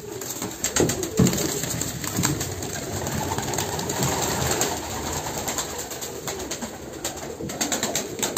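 Domestic pigeons cooing in a loft, with scattered light clicks and scuffling from the birds.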